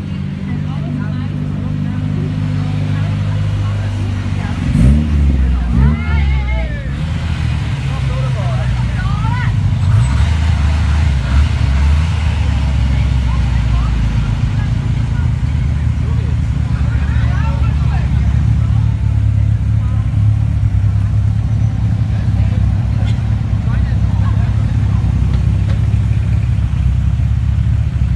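Ford RS Cosworth cars with turbocharged four-cylinder engines running at low speed as they file past one after another, with a couple of short throttle blips about five seconds in.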